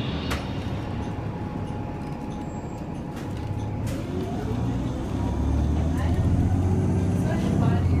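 Low engine rumble that grows louder about five seconds in, with faint voices in the background.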